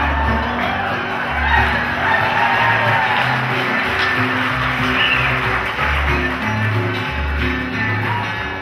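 Live acoustic jug-band music: strummed acoustic guitar over a washtub bass plucking a line of separate low notes, with a washboard in the band.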